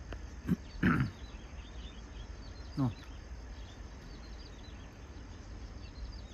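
A man's short spoken exclamations, three brief falling calls in the first three seconds, over a steady low rumble and faint high chirping.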